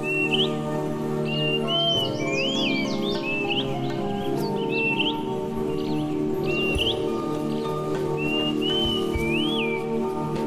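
Slow instrumental background music of held, sustained notes, with bird chirps repeating over it throughout.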